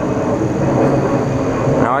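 A steady engine drone with a dense low hum, holding at an even level throughout.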